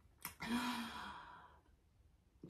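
A woman's short sigh: a breath out with a faint hum under it, fading away over about a second. A small mouth click comes just before it.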